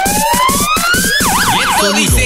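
Electronic dance music build-up: a rising synth sweep over a fast drum roll, giving way about a second in to a siren effect wailing rapidly up and down.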